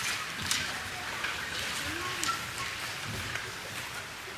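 Shuffling footsteps, rustling and a few light knocks as a group of people get up and move about on a church platform.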